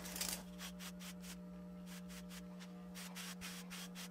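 Quick, repeated strokes of a wave brush's stiff bristles rasping over short waved hair, several strokes a second and faint, with a steady low hum underneath.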